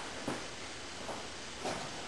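Steady low hiss of background noise, with a few faint soft brief sounds.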